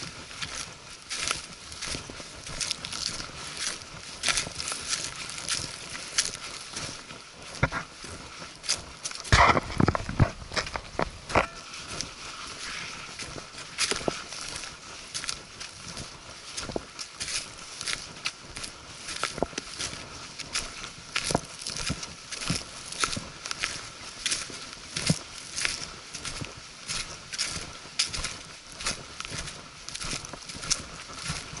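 Footsteps crunching through dry fallen leaves on a forest path at a steady walking pace. A brief cluster of louder knocks and thumps comes about nine to eleven seconds in.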